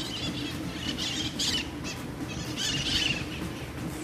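Birds calling in the surrounding trees: several short bursts of high-pitched squawking and chirping calls, the loudest around one and a half and three seconds in, over a steady low background noise.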